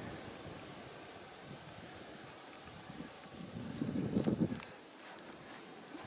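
Faint wind on an open snowy hillside, with a short rustling, crunching patch about four seconds in and a few sharp clicks just after it.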